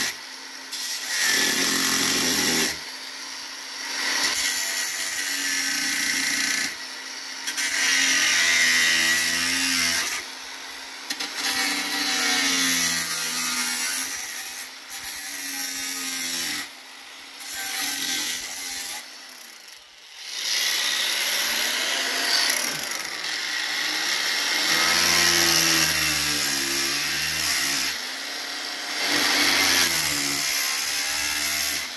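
Cordless angle grinder with a thin cutting disc cutting through a rusty steel van sill packed with body filler. It runs in bursts of a few seconds with short breaks between.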